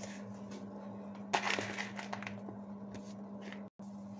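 Quiet kitchen sounds by a pot of soup on the stove: a steady low hum with faint pops and clicks, and a short rustling scrape about a second and a half in. The sound drops out for a moment near the end.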